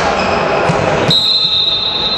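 Sports hall ambience during a volleyball match: general crowd and court noise with a ball bouncing on the hall floor. About a second in, a steady high whistle tone starts and holds.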